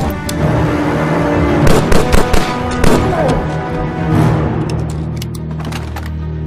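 Movie gunshots over a loud film score: a shot right at the start, a quick cluster of three about two seconds in and another near three seconds, then fainter shots near the end as the music carries on.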